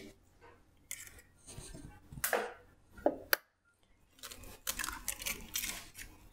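Eggs being cracked one after another and broken open over a glass mixing bowl: several sharp taps and crackles of eggshell.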